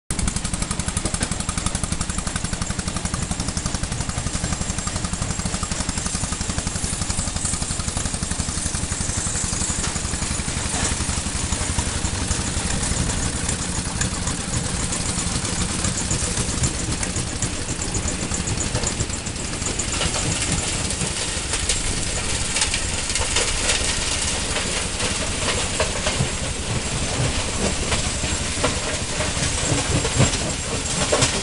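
Stone-crushing plant running: a steady loud mechanical rumble and rattle from the crusher and conveyor machinery, with more sharp clatter of rock in the second half.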